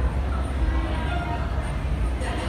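Steady low rumble of a large hall's background noise, with faint distant voices in it.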